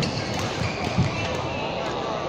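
Badminton rally: two sharp racket strikes on the shuttlecock, one at the start and one about a second later, with thuds of players' feet on the court floor and a steady background of voices in the sports hall.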